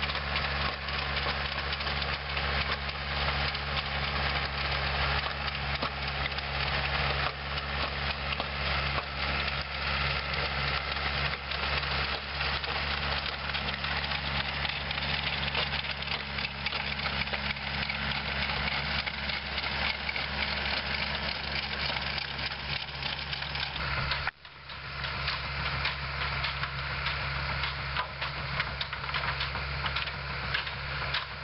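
Tractor engine running steadily while towing a manure spreader, with a dense, noisy clatter over it that fits the spreader's running gear and the manure it throws. The sound cuts out briefly about 24 seconds in, then carries on the same.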